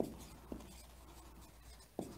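Marker pen writing on a whiteboard: faint strokes, with a few light clicks of the tip on the board, one about half a second in and one at the end.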